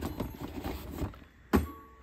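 Small paperboard lamp boxes shuffled and knocked together by hand inside a cardboard carton: a run of light rustles and taps, then a sharper knock about one and a half seconds in.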